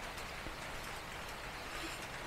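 Faint, steady hiss of background noise with no distinct sound standing out.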